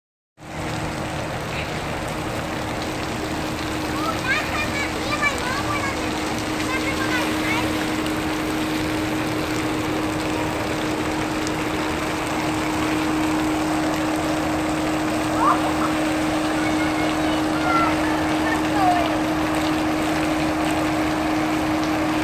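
Steady rushing spray of splash-pad water jets under a constant low hum, with faint voices calling in the distance now and then.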